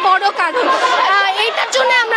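Speech only: a young woman talking close to the microphone, with a crowd's chatter behind her.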